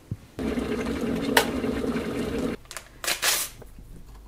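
Stainless-steel electric kettle switched on with a click, then heating with a steady rumbling hiss that stops abruptly about two and a half seconds in. A short, loud rush of noise follows about three seconds in.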